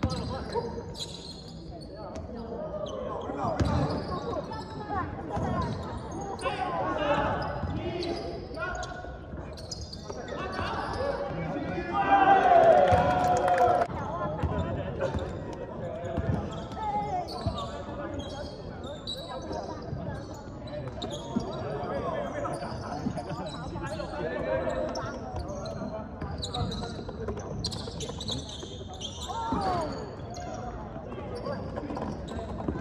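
Basketball dribbling on a hardwood gym floor, a run of ball bounces throughout, with players' voices calling out over it. The loudest moment is a shout about twelve seconds in.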